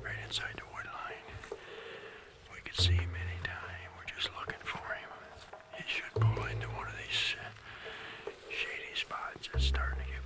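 A man whispering, with a deep low pulse from background music swelling about every three and a half seconds.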